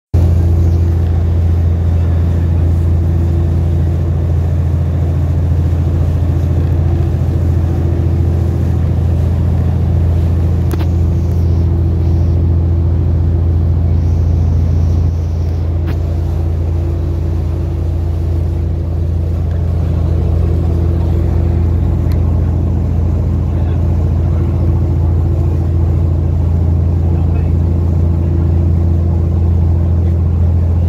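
A boat's engine running steadily while the boat is under way: a constant low drone.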